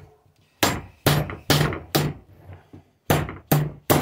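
Hammer blows on the metal frame of a nebulizer's small compressor motor, about seven sharp metallic strikes in two runs with a short pause a little after halfway, knocking at a stuck part that won't come out.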